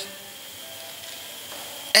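A pause in speech: steady faint hiss of room tone with a thin, steady high whine. A man's voice comes back right at the end.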